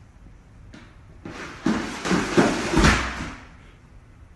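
Plastic laundry basket pushed off the top step by a cat and tumbling down a wooden staircase: a short scrape, then a run of clattering knocks over about two seconds, the heaviest thump near the end.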